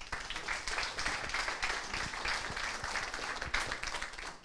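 Audience applauding, a dense patter of many hands clapping that starts abruptly and holds steady.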